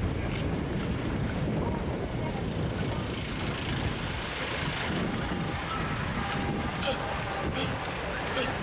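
City street traffic: buses and cars running past, with wind rumbling on a handheld microphone that is being carried at a run.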